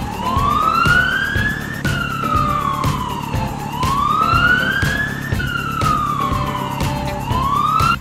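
Police siren wailing, its pitch rising and falling slowly in long sweeps of about two seconds each, over background music.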